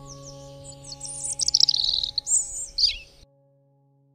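Birds chirping in quick, high, falling notes over background music of long held tones. Both cut off sharply about three seconds in, leaving a faint held note.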